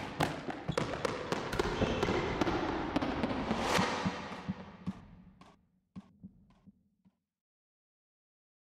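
Animated-logo sound effects: a rush of noise packed with quick ball-like knocks, swelling at about four seconds. A few separate bounces of a ball follow, dying away by about seven seconds.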